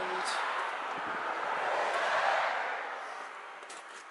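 A passing vehicle: an even rush of road noise that swells to a peak about two seconds in and then fades away.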